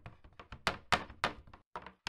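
A quick, irregular series of sharp taps and thunks. The loudest three come close together around the middle, followed by a brief lull.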